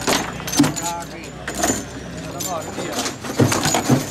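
Foosball table in play: sharp knocks of the ball struck by the plastic figures and hitting the wooden table, with the steel rods rattling. Several knocks, the loudest about half a second in and two more close together near the end.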